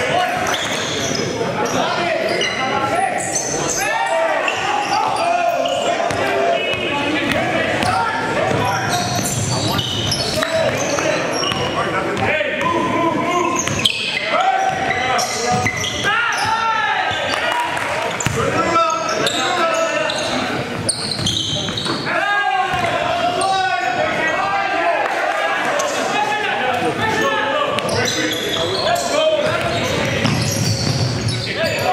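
Live basketball game in a large, echoing gym: a basketball dribbling and bouncing on the hardwood floor, sneakers squeaking, and players' voices calling out throughout.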